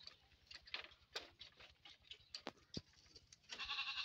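A goat bleats once, a short call of about half a second near the end, among a few scattered light knocks and clicks.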